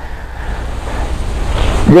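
Steady low rumble and hiss of road and cabin noise in a Mercedes-Benz plug-in hybrid pulling away on its electric motor alone, with the petrol engine off. The noise grows slightly louder as the car gathers speed.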